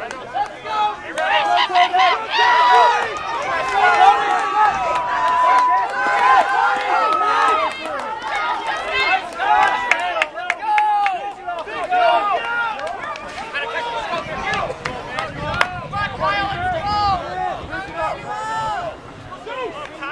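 Spectators in the stands shouting and cheering over a babble of crowd chatter, with many voices overlapping. It is loudest in the first several seconds and eases off later.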